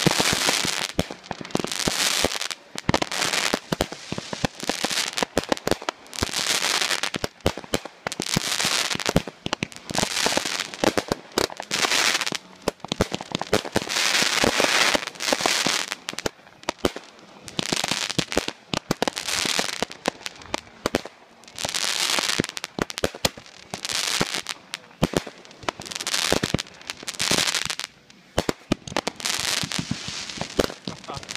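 Aerial fireworks bursting into white crackling stars: sharp pops over dense crackle, with a fresh burst about every one to two seconds.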